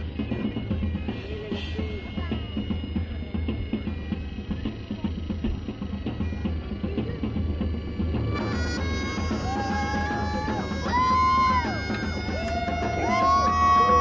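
Drums playing a steady beat. About eight seconds in, bagpipes join with a melody of long held notes.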